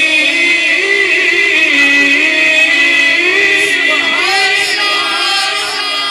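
A male naat reciter singing in long, drawn-out phrases with gliding pitch, amplified through a handheld microphone.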